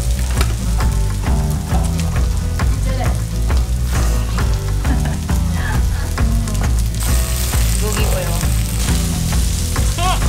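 Samgyeopsal pork belly sizzling steadily on a tabletop grill, with many small pops of spattering fat. Music with a steady low bass line plays along.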